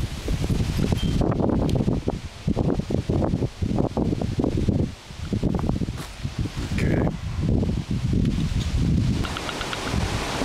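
Wind gusting across the microphone, an uneven low rumble that swells and drops.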